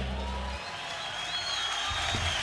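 A live rock band's final chord, with bass, rings out and stops about half a second in. Then the audience applauds and cheers.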